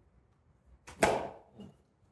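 A single sharp knock about a second in that dies away within half a second, followed by a softer knock.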